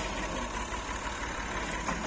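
Massey Ferguson tractor's diesel engine idling with a steady low rumble.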